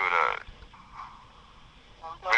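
A voice, heard for about half a second at the start, then a faint background hiss.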